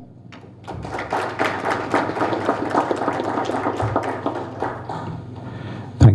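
Audience applauding, starting about a second in and thinning out near the end.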